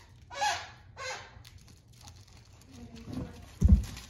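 A greyhound rummaging at a toy on its padded dog bed: two short rustling bursts about half a second and a second in, then a heavy low thump near the end as it drops its front onto the bed.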